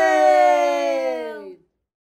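A final sung note of the song, held with a slight downward slide in pitch, then cut off about one and a half seconds in.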